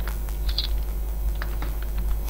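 Computer keyboard typing: a handful of separate, irregular keystrokes as a short phrase is typed, over a low steady hum.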